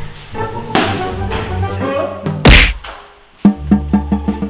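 Background music with edited action sound-effect hits: one loud, sharp impact about two and a half seconds in, then after a short lull a quick run of punchy thuds near the end.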